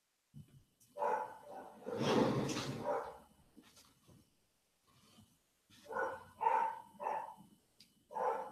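A dog barking indoors off camera: a couple of short barks about a second in, a longer, rougher bark around two seconds, then three quick barks near the end.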